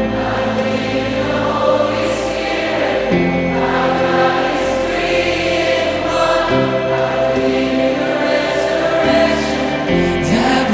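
Praise and worship song: massed voices singing over an instrumental backing, with long held chords that change every three seconds or so.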